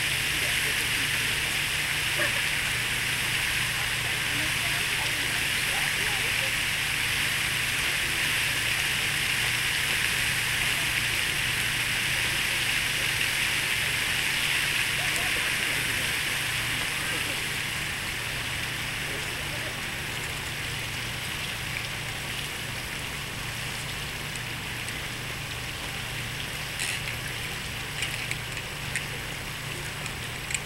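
Large park fountain's water jet falling into its basin, a steady rushing; the rush dies down about two-thirds of the way through as the jet is lowered.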